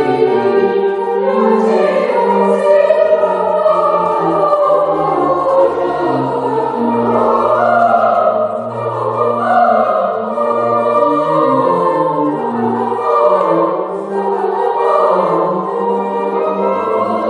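Children's choir singing a slow piece in several parts, with long held notes, in a church.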